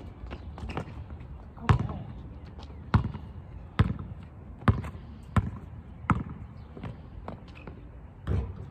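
A basketball bouncing on an asphalt court: a series of sharp bounces about a second apart.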